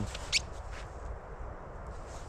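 A single short, high-pitched squeak about a third of a second in, over a low steady rumble.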